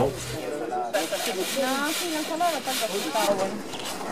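Voices of people talking at a distance over a steady, rasping hiss of soil being shaken through a wire sieve screen.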